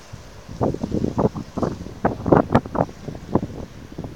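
Wind buffeting the microphone in irregular gusts, a rapid run of rough blasts that starts about half a second in and eases near the end.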